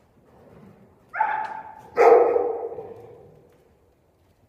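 A dog barking twice, about a second apart, the second bark louder and followed by a long echo through the large indoor arena.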